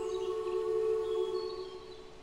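Ambient music: a sustained held chord fading out in the last half second, with a few faint high bird chirps over it.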